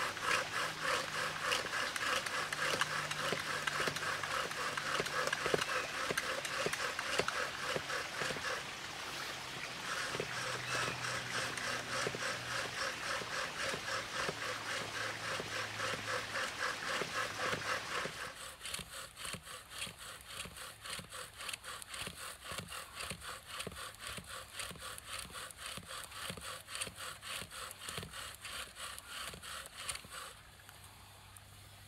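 Bow drill at work: a wooden spindle grinding in a wooden fireboard with each quick back-and-forth stroke of the bow, in an even, steady rhythm. About two-thirds of the way in it becomes quieter.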